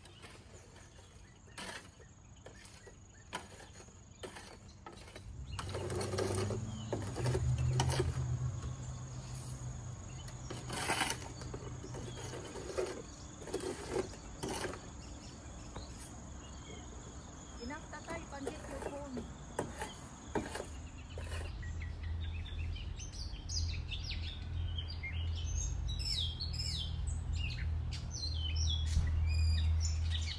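Outdoor ambience with a low rumble and scattered light clicks, and a thin steady high tone that stops about two-thirds of the way through. In the last third, birds chirp repeatedly.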